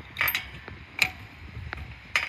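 Metal hardware of swing-set trapeze rings creaking and clicking under a hanging child's weight, with a sharp click about a second in and a few faint ticks.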